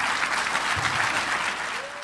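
Church congregation applauding steadily after the sermon's close, easing off slightly near the end.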